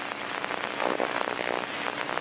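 Dense, continuous crackling noise, like rain on a surface.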